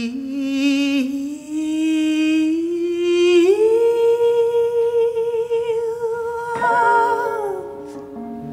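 A woman singing a wordless line, sliding between notes with vibrato, then rising about three and a half seconds in to a long held high note that falls away near the end.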